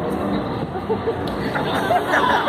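Crowd of onlookers murmuring and chattering, several voices overlapping with no one voice clear.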